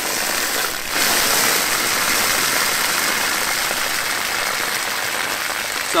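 Water rushing steadily from opened outdoor taps on a pipe manifold and splashing onto the ground, pressure-testing a pump-fed water line; it gets louder about a second in as more taps are opened.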